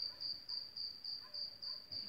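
A cricket chirping steadily, a high pulsed trill repeating about four times a second.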